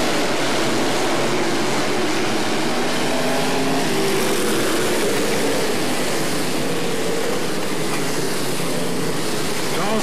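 Several dirt-track modified race cars' engines running together at a steady, loud level, their pitch drifting slowly up and down as the cars circle the dirt oval.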